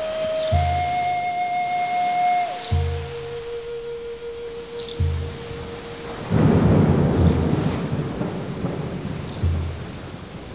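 Music: a Native American flute holding long notes, stepping down to a lower note a couple of seconds in, over a slow low drum beat about every two and a half seconds. About six seconds in, a loud rushing noise swells up for about two seconds and dies away.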